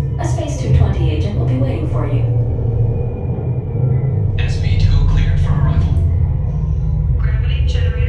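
Steady low rumble of a simulated space-elevator ride's soundtrack with music, the rumble deepening and swelling about halfway through, under people's voices.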